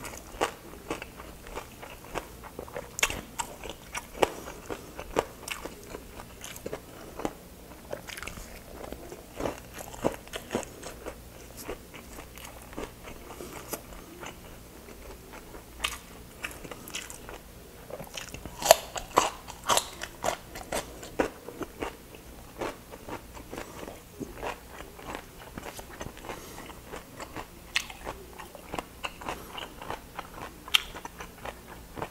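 A person chewing crispy fried pork dinakdakan, with wet mouth clicks and crunches coming irregularly. A louder run of crunches comes about two-thirds of the way through, as a fresh cucumber stick is bitten and chewed.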